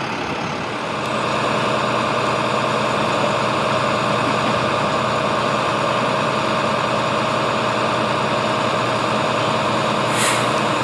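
Truck engines idling: a steady drone with a couple of held tones, getting a little louder about a second in.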